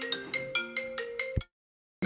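A phone ringtone: a quick, marimba-like melody of bright plucked notes, about five a second. It cuts off abruptly about a second and a half in, leaving dead silence.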